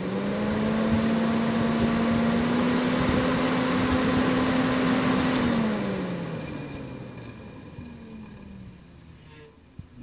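Volvo 940's electric cooling fan, switched on by the diagnostic unit's component test, running with a steady hum for about five seconds. It then cuts out and winds down, its hum falling in pitch and fading.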